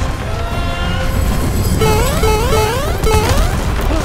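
Loud film soundtrack: music over a heavy, continuous low rumble with crashing effects, and a run of about four short rising tones from about two seconds in.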